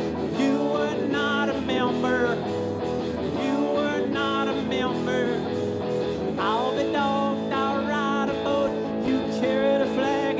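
Live blues-rock band playing an instrumental passage: electric guitar and drums, with a harmonica played through the frontman's cupped vocal microphone, its notes wavering and sliding.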